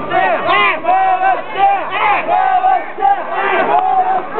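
A group of young men shouting together in short, repeated arching calls, many voices overlapping.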